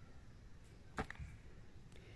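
Faint outdoor background with a single sharp click about a second in.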